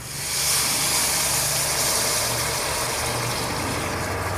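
Liquid nitrogen boiling off with a steady hiss as the room-temperature superconductor assembly is lowered into the cooling container; it starts suddenly and eases slightly, with a low steady hum beneath.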